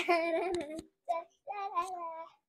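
A young girl singing a song on her own, without accompaniment, in short phrases with held notes.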